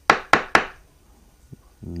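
Three sharp knocks about a quarter second apart: a steel adjustable parallel being rapped to break its sliding halves loose, stuck because they have never been moved. A faint click follows a second later.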